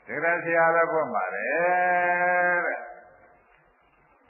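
A monk's voice preaching in Burmese: a short spoken phrase, then one syllable drawn out in a long held tone that fades out about three seconds in.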